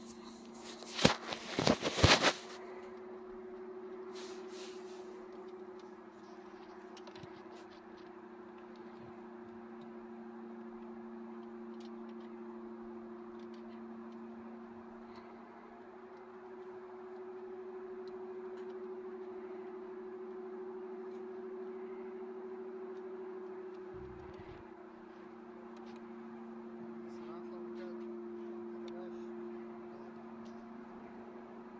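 Hand tools knocking and clattering against the metal under a car's dashboard, loudest in a burst about one to two seconds in, then faint scattered clicks of tool work. A steady, droning two-tone hum runs underneath throughout.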